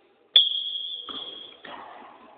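Referee's whistle: one sharp, steady blast about a second long, starting about a third of a second in, signalling the restart of play after the ball is set on the touchline.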